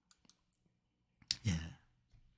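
Computer mouse clicking: a few faint clicks, then a sharper click about a second and a half in. A short vocal sound from a man follows at once.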